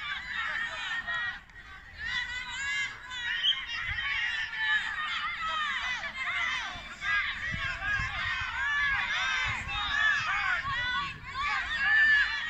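Many birds calling and chirping at once, a dense chorus of short, high-pitched overlapping calls that never stops.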